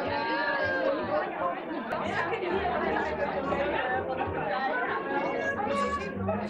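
Many women talking at once in overlapping conversations, a steady crowd chatter in which no single voice stands out.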